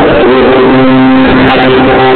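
Loud live band music, guitar with steady held keyboard chords.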